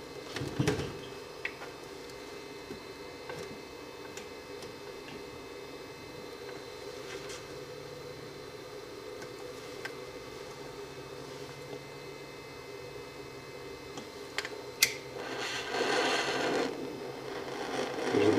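Steady low hum with occasional handling knocks and clicks around the bench. Near the end, a couple of sharp clicks, typical of a lighter being struck, then about a second of hissing as pressurised HHO gas jets from the torch tip.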